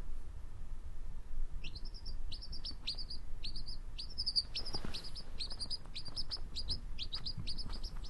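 Quail chick peeping: a rapid run of short, high peeps, several a second, starting about one and a half seconds in.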